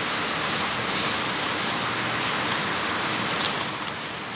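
Steady hiss of running water, stopping shortly before the end, with a faint click or two.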